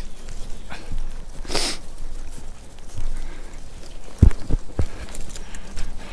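Footsteps on mown grass, with rustling, a short hiss about one and a half seconds in and a few low thumps a little past the middle.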